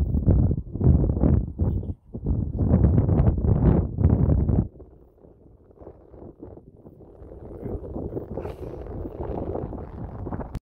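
Wind buffeting the phone's microphone in loud, irregular gusts, dropping off suddenly about halfway through; after that a quieter rushing sound slowly grows louder.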